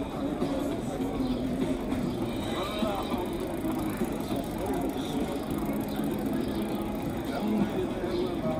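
Steady city street noise: traffic rumbling along, with indistinct voices of people nearby.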